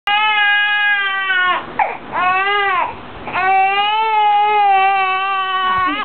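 An infant crying hard: long, loud, drawn-out wails with short catches of breath between them, the last wail the longest.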